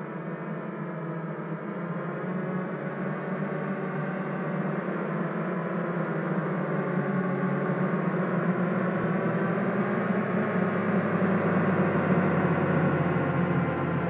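A sustained cinematic sound-design drone with a deep low layer, swelling steadily louder throughout.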